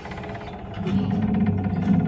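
Chairlift machinery rumbling with a fast, even rattle, growing louder about a second in.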